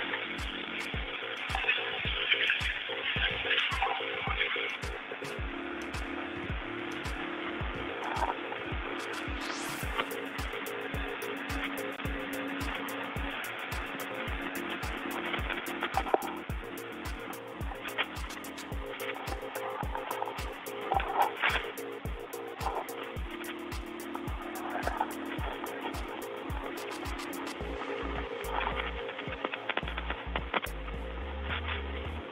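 Open spacewalk radio channel with no one talking: a steady hiss and low hum through a narrow-band link, with regular clicks ticking about twice a second.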